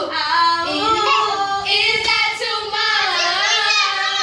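A girl singing a cappella, drawing out sung vowels in long notes that slide up and down in pitch, with no accompaniment.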